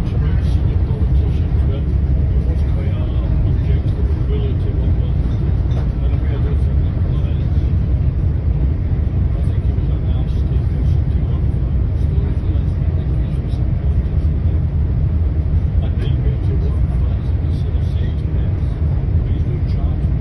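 Steady low rumble of a moving passenger train heard from inside the carriage, with a man's voice talking in conversation partly masked by it.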